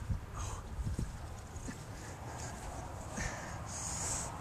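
A sheet-wrapped body being dragged over grass: fabric rustling and scuffing, with short breathy bursts from the person hauling it, about half a second in and again after three seconds. A low rumble of wind on the microphone runs underneath.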